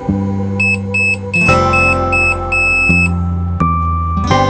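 Background music with a run of short, high electronic beeps, about two or three a second, from a microwave timer counting down. A held beep tone follows near the end.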